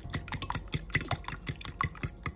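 Metal fork beating raw eggs in a ceramic bowl, its tines clicking rapidly against the bowl's side, about eight clicks a second.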